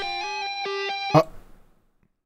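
Clean electric guitar in a song playing a short phrase of held notes, broken by one sharp hit a little after a second in, then fading to silence near the end.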